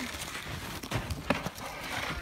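Skis and ski gear moving in snow: faint, irregular knocks and scuffs, a few to the second.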